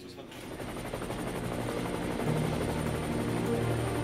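Helicopter rotor, growing steadily louder, with music underneath.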